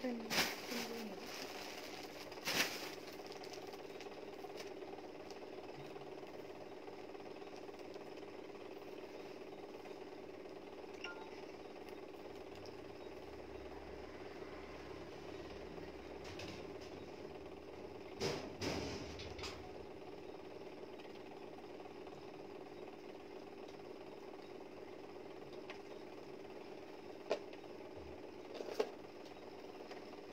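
A steady low machine hum, with a few brief knocks and rustles scattered through it.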